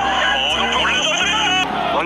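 Male television football commentary voices with music underneath. The sound changes abruptly at a cut about one and a half seconds in.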